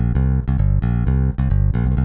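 UJAM Virtual Bassist Rowdy, a virtual electric bass plugin, playing a swinging rock bass phrase as a quick run of plucked notes.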